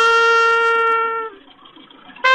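Background music: a trumpet holds one long note, which stops about two-thirds of the way through.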